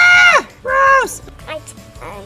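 A young child's voice: two high-pitched, drawn-out cries, each about half a second, the second following just after the first.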